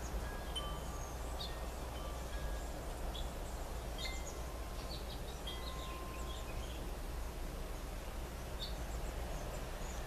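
Faint wind chimes ringing now and then, short clear tones at several different pitches, over a steady low background rumble.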